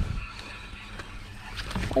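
Low, steady rumble of wind on the microphone with faint background noise; right at the end a man starts a loud, surprised exclamation of "Oh" as a fish strikes.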